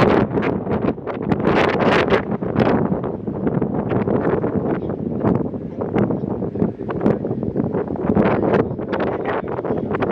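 Wind buffeting the microphone outdoors: a loud, gusty rumble and rush with no steady pitch.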